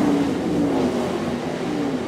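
A race car engine passing at speed, loud, its pitch falling slowly as it goes by.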